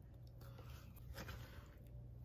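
Near silence: faint room tone, with a few soft, faint taps as pieces of cut fruit are dropped into glass bowls.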